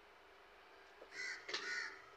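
Crow cawing twice in quick succession, about a second in, two harsh calls of about a third of a second each.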